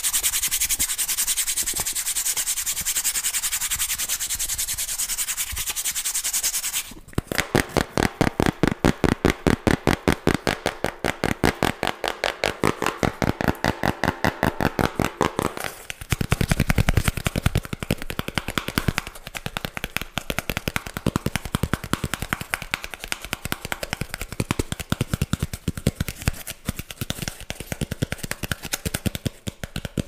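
Close-miked corrugated cardboard worked with fingernails: a steady rasping scratch for about seven seconds, then a fast, even run of sharp clicks, several a second, that goes on with little change to the end.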